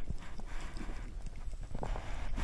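Underwater sound picked up through a diver's camera housing: a steady low water rumble with many small, irregular clicks and knocks.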